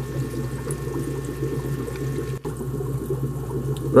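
Steady bubbling, running water from aquarium filtration, over a low hum, with a brief dropout a little past halfway.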